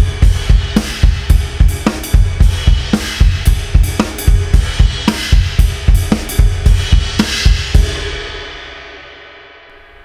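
Gretsch drum kit playing a 3/4 groove of kick, snare and cymbals, with the bass drum in a steady dotted-eighth pattern that sets up a hemiola against the beat. The playing stops a little under eight seconds in, and a cymbal rings out and fades.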